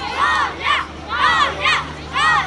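Children's voices chanting "Davay!" ("come on!") over and over in rhythm, about one two-syllable shout each second, loud and high-pitched.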